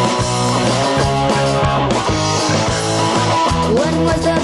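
A rock band playing a song: electric guitar over bass and a steady drum-kit beat.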